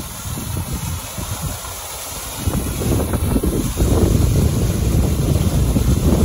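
Wind buffeting the microphone in gusts, heavier from about two and a half seconds in, over the steady splash of a small artificial waterfall falling into a pool.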